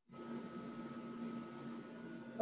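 Faint steady hiss with a low electrical hum and a thin higher tone from an open microphone, switching on abruptly out of dead silence.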